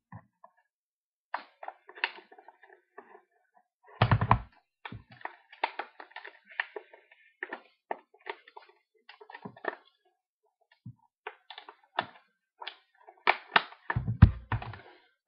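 Stiff plastic retail packaging handled and pried at by hand, giving irregular crackles and clicks, with a louder thump about four seconds in and a run of sharper clicks near the end.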